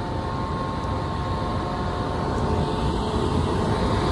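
Car wash blower dryers running: a steady roar with a whine at several pitches held over it. The filmer calls them the worst dryers he has ever heard and puts the noise down to no maintenance.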